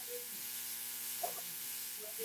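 Quiet room tone in a pause between speech: a steady hiss with a faint electrical hum, and a faint short sound a little past halfway.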